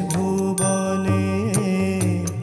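Male voice singing a long held note in a Bengali devotional song, with an ornamented turn about one and a half seconds in. It is accompanied by the steady drone and chords of a harmonium and light regular percussion strikes.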